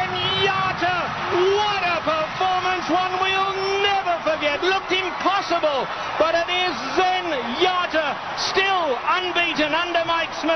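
Excited high-pitched voices yelling and cheering, with long drawn-out shouts that swoop up and down in pitch and sometimes overlap.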